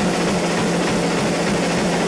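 Live heavy metal band with distorted electric guitars holding a loud, steady wall of sound, with no clear drum hits.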